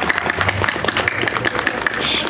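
Audience applauding, with crowd voices mixed in.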